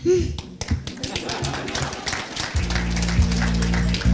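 Audience clapping. About two and a half seconds in, music starts with steady, sustained low bass notes.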